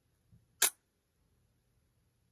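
Nikon DSLR shutter and mirror clacking shut at the end of a one-second exposure: a faint tick, then one sharp click a little over half a second in.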